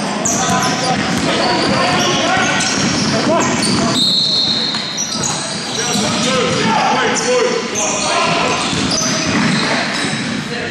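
Basketball game sounds echoing around a large sports hall: sneakers squeaking on the court, the ball bouncing, and players calling out.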